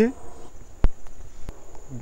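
Steady high-pitched insect buzz in forest undergrowth, with two short clicks about a second and a second and a half in.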